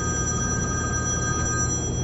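Smartphone ringing with an incoming FaceTime call: a steady chord of high tones that stops shortly before the end.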